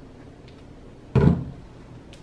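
A single dull thump about a second in, sudden and heavy, dying away within half a second.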